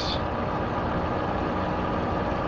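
Steady background noise on the call, an even hiss with a faint low hum and no speech.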